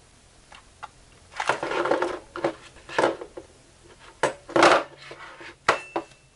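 Two Insteon six-button keypad wall switches being handled and set down on a table: a series of irregular knocks and clatters from their plastic housings and metal mounting straps, the loudest near the middle.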